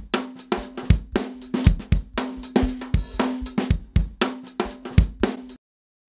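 Drum loop played back from a DAW track: a repeating kick-and-snare beat with hi-hats and cymbals over a steady low note. It stops suddenly near the end.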